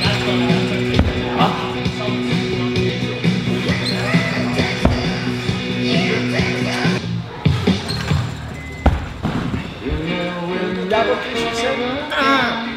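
Background music, with several dull thuds from a gymnast swinging on parallel bars and landing a double pike dismount on a mat.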